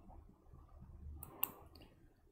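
Quiet room tone broken by a couple of short clicks, the sharpest about one and a half seconds in.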